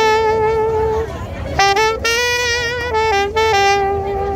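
Solo saxophone playing a melody: a long held note, a short break about a second in, then a quick run of notes that settles on a long, slightly lower held note near the end.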